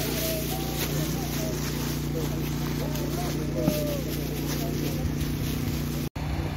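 A steady low engine hum, with faint voices in the background.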